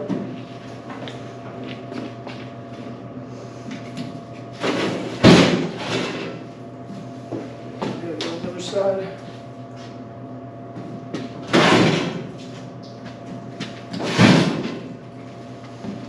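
Metal clunks and scraping clatter as a stainless-steel washer is moved on a hand pallet jack, with three loud bangs about five, eleven and fourteen seconds in and smaller knocks between them, over a steady electrical hum.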